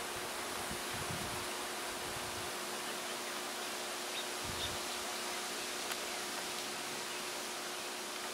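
Steady outdoor background hiss with a faint, even hum, broken by a few brief low rumbles about a second in and again about four and a half seconds in.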